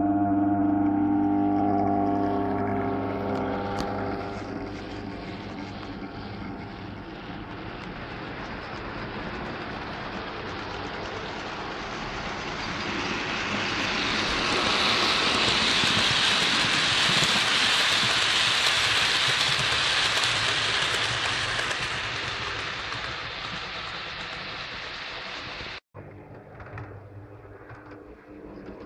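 A held pitched tone fades over the first few seconds. Then an OO gauge model freight train in Freightliner livery rolls past on the layout's track, its wheels and motor making a rushing rattle that builds to its loudest mid-way and fades again as the train moves away. The sound cuts out abruptly for an instant near the end.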